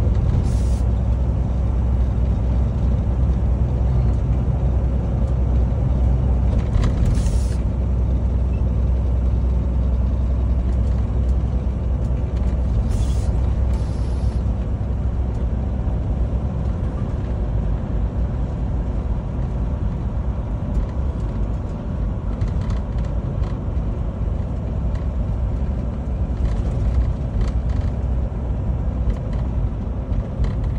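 Steady low rumble of a semi-truck's engine and road noise heard from inside the cab at highway speed, with a few brief hisses in the first half.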